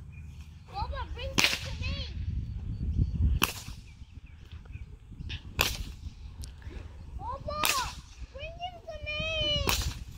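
A bullwhip cracked five times, about every two seconds, each crack a sharp snap.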